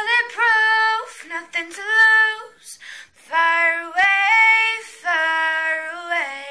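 A young woman singing unaccompanied, a cappella: several held notes with gliding pitch, broken into short phrases with brief pauses between them.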